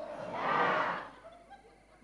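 A large studio audience of women laughing and murmuring together in a brief swell that dies away about a second and a half in.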